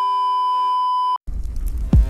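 Steady 1 kHz television test tone, the 'bars and tone' signal of a broadcast cut-off, which stops abruptly about a second in. A low rumbling noise then comes in, with a brief falling boom near the end.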